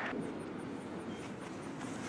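Faint steady outdoor background noise, with a faint high-pitched ticking about five times a second.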